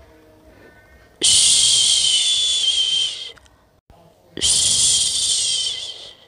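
A person shushing a baby to sleep: two long, loud 'shhhh' sounds of about two seconds each, the first a little over a second in and the second near the end, with a short pause between them.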